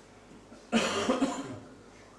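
A person coughing once, loudly and abruptly, just under a second in, dying away within about a second.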